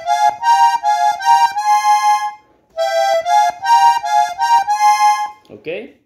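Piano accordion playing a slow melodic line in thirds, two notes sounding together at each step, in two short phrases with a brief pause between them.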